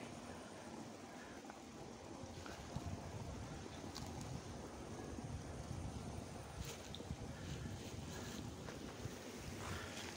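Faint outdoor ambience: a low, steady rumble of wind on the microphone, with a few faint clicks and rustles.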